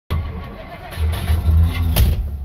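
1958 Edsel Citation's V8 engine running inside the cabin, a low rumble that swells louder about a second in, with a sharp knock at the very end.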